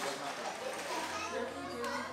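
Indistinct chatter of several people talking at once, children's voices among them.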